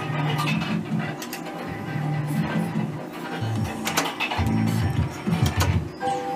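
Merkur 'Up to 7' slot machine playing its low electronic tune and spin sound effects as the reels run, with a number of sharp clicks.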